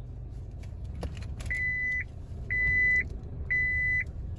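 A car's in-cabin warning beeper sounding three steady high beeps, about one a second, over the low hum of the running engine, with a single click shortly before the first beep.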